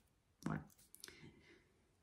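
Mostly quiet room: one short spoken word, then a few faint clicks about a second in.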